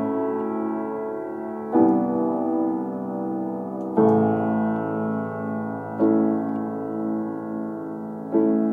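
Solo piano playing a slow, soft lullaby in A major, a new chord struck about every two seconds and left to ring and fade.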